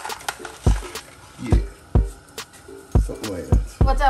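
Background music with a heavy beat: deep kick-drum thumps with sharp hits every half second to a second, and a pitched melody or voice coming in near the end.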